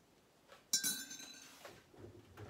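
A metal teaspoon clinking against a ceramic tea mug: a light tap, then one sharp clink that rings on for about a second.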